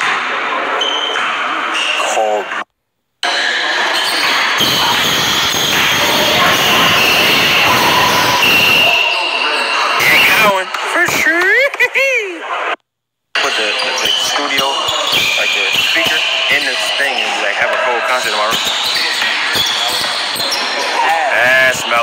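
Pickup basketball on a hardwood gym floor: a ball bouncing under players' shouts and chatter, echoing in a large hall. A drawn-out wavering shout comes about halfway through, and the sound cuts out twice for a split second.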